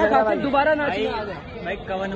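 Speech only: several young people chatting over one another.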